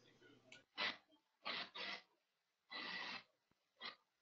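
Five faint, short puffs of breath on a microphone, spaced irregularly, each lasting well under half a second.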